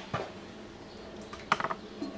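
Small kitchen handling noises at the stove: a soft click near the start, then a quick run of light ticks about one and a half seconds in.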